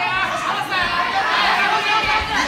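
Spectators shouting and calling out, several voices overlapping one another.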